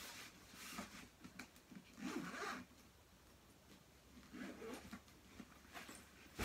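Zipper on a soft-sided suitcase being pulled in a few short, quiet strokes as the case is opened.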